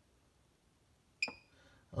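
Chargery 1500 W off-board battery charger giving one short electronic beep with a click about a second in, as its start button is held: the signal that the charger is starting to charge.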